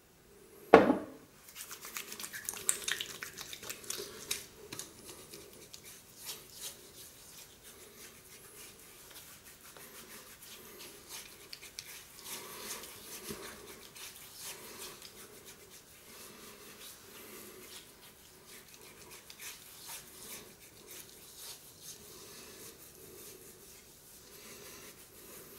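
Hands rubbing aftershave balm into a freshly shaved face and neck: soft, uneven rustling and crackling of palms over skin and stubble, busiest in the first few seconds. A single sharp knock about a second in is the loudest sound.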